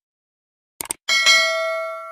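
Subscribe-button sound effect: a quick mouse click just before a second in, then a bright notification-bell ding that rings on and slowly fades out.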